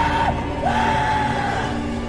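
Tense film-score music with two long, high held notes over it. The second note rises in just after half a second, holds for about a second, then bends down and fades.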